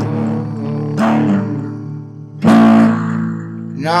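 Acoustic guitar chords strummed and left to ring between sung lines, with a louder strum about two and a half seconds in.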